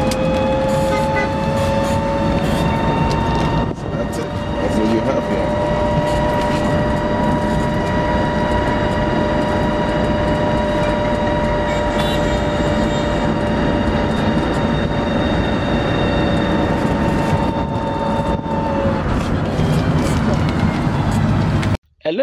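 Small electric vehicle driving, heard from inside the cab: a steady two-tone motor whine that rises slightly at first and holds, over road and wind rumble. The whine fades about three seconds before the end, and the sound cuts off abruptly just before the end.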